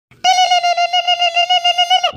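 Telephone ringing sound effect: one warbling electronic tone that starts a quarter second in and cuts off after about two seconds.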